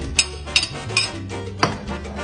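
Background Latin music playing, with about four sharp clinks of a slotted spatula knocking against the pot and plate as boiled dumplings are lifted out of the water.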